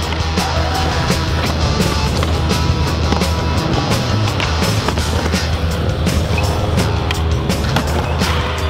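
Skateboard wheels rolling over smooth concrete ramps, heard under loud music with a steady beat.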